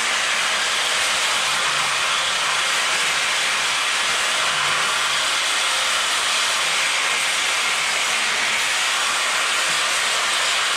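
Plasma cutter hissing steadily as it cuts brackets off a steel rear axle housing.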